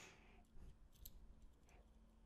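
Near silence with a few faint clicks as a small screwdriver tip picks at the drivers and wiring inside an opened in-ear monitor shell.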